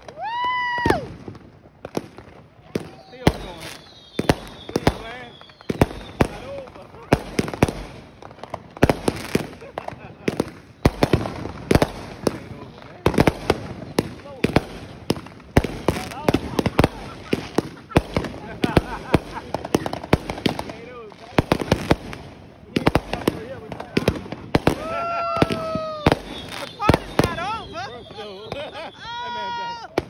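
Aerial fireworks going off in quick succession, with many sharp bangs and crackles overlapping throughout.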